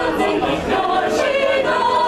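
Mixed choir of men's and women's voices singing a cappella in parts, sustaining chords.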